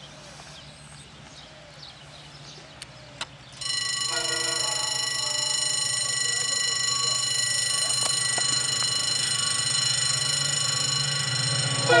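The horn of an EMD class 060DS diesel locomotive sounds one long, steady blast. It starts abruptly about three and a half seconds in and holds to the end, over a low engine rumble that grows as the train approaches.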